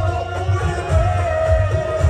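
Qawwali music: a long held melody note that wavers and sinks slightly toward the end, over a steady low hand-drum beat.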